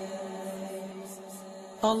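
A short pause in a chanted Arabic supplication: faint steady held tones linger, then the chanting voice comes back loudly near the end.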